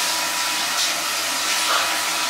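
Water running steadily from a bathroom tap.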